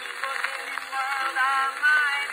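Early acoustic-era phonograph recording of a male singer with accompaniment, dated 1908. The voice sings with a wavering vibrato in a thin, narrow-range sound, with almost nothing in the bass, and swells in loudness near the end.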